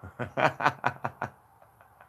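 A man laughing in a quick run of about six short bursts, fading out after about a second and a half.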